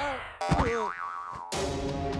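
Cartoon sound effects: a falling, wavering whistle fades out, then a sudden springy boing with a wobbling pitch about half a second in. Background music takes over with a sudden cut about a second and a half in.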